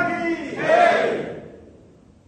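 A group of voices shouting a slogan in unison: two calls, the second held longer and trailing off about halfway through.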